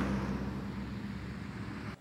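Street ambience: a steady traffic hum with a low engine drone, fading slowly and then cutting off suddenly at the end.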